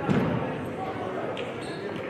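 Indistinct voices echoing in a large sports hall, with one dull thump just at the start.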